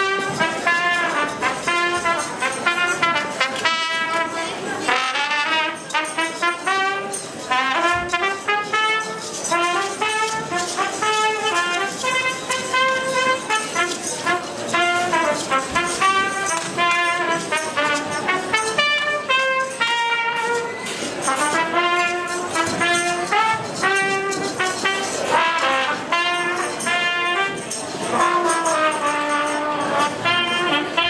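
Trumpet playing a lively march melody through a microphone and PA speaker, note after note without a break.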